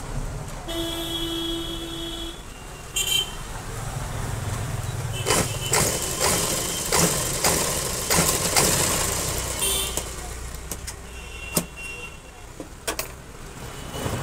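Cloth strips rustling and clicking as they are handled, over a low steady rumble. About a second in, a held horn-like tone lasts about a second and a half, with a shorter one near three seconds.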